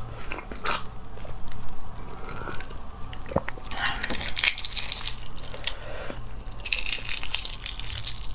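Close-miked eating of a boiled fertilized egg (huozhuzi): biting and chewing at first, then fingers cracking and peeling the eggshell. The peeling comes in crackly clusters of small clicks about halfway through and again near the end.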